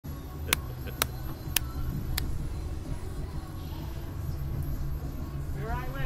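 Steady low rumble from the Slingshot ride's machinery as the launch capsule is readied, with four sharp clicks about half a second apart in the first two seconds. A voice begins just before the end.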